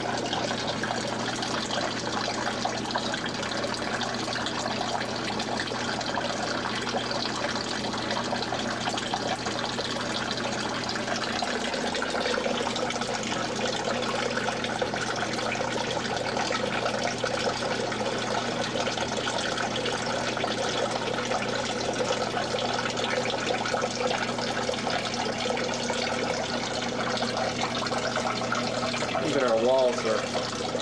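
Steady running and splashing of water from a plaster model's waterfall, with a low steady hum underneath.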